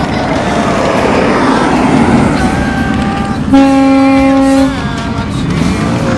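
Harley-Davidson V-twin motorcycle engines running, with a steady horn blast about three and a half seconds in that lasts about a second and is the loudest sound.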